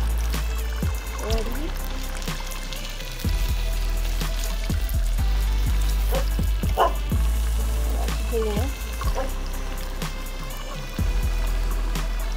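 Music with a steady bass line and a voice, playing over the sizzle of fish frying in hot oil in a skillet.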